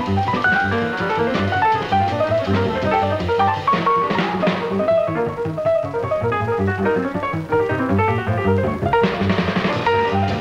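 Jazz piano trio playing: quick piano runs over double bass and drums, with cymbal swells about four seconds in and again near the end.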